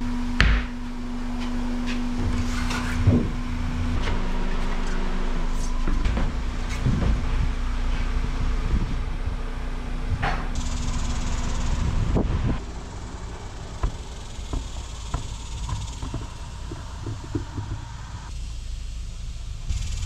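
Wheels and tires being handled on a shop floor: scattered knocks and thuds, with a sharp knock right at the start and another about three seconds in, over a steady low hum that fades out about halfway through.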